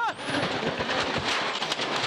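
Rally car careering off the road, heard from on board: a dense, continuous rattle of rapid, irregular knocks and impacts as the car crashes over rough ground.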